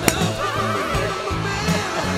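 A golf club striking a ball once, a sharp click just after the start, over background music with a steady beat.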